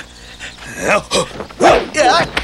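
Short yelping cries from fighters in a whip fight: one just before a second in and a louder one near the end, with a sharp crack between them.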